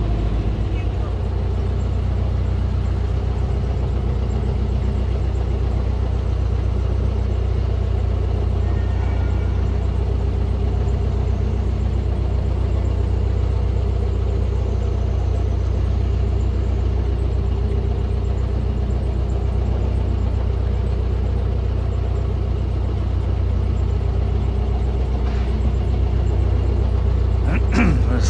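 Narrowboat's diesel engine running steadily at cruising speed, a low, even engine note.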